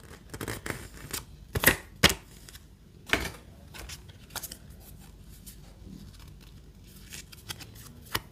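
A paper instruction card and a small sheet of strap protection stickers handled by hand: crisp crackles and snaps of paper and plastic film, loudest in two sharp snaps close together about two seconds in and another a second later, then light scattered ticks of handling.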